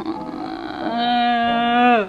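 A young woman laughs, then lets out a long, high, steady whine of overwhelmed emotion, held for about a second, its pitch dropping as it ends.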